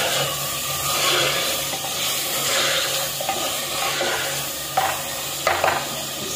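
Chicken, tomato and spice masala frying in oil in a clay pot, sizzling steadily as a wooden spoon stirs it.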